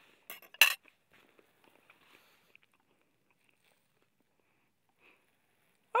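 Two sharp clicks from a metal fork as a mouthful of sheep meat is bitten off it, then faint, sparse chewing sounds.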